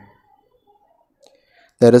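A pause in a man's spoken explanation: near silence with a few faint small clicks, then his speech resumes near the end.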